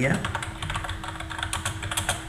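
A quick run of keystrokes on a computer keyboard, typing text.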